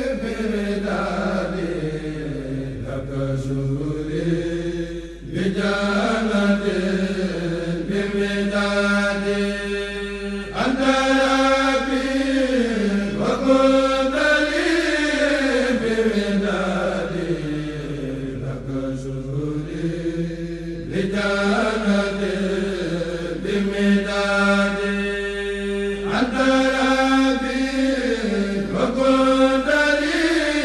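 A Mouride kourel, a group of men, chanting a xassida in unison without instruments. They hold long notes that rise and fall slowly, in phrases broken by short pauses every few seconds.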